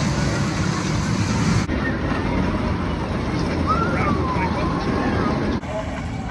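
Roller coaster trains running along their tracks with a steady rumbling noise, mixed with people's voices and a brief shout about four seconds in; the sound changes abruptly about a second and a half in and again near the end as one coaster gives way to another.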